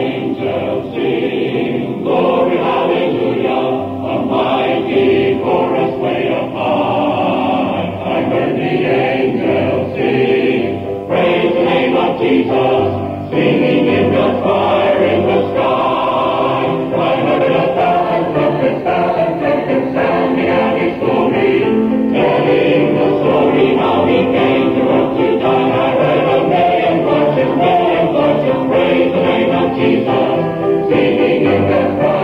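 Baptist church adult choir singing, the recording dull and muffled with its treble cut off.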